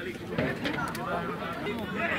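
Chatter of many overlapping voices, boys and men talking and calling out at once.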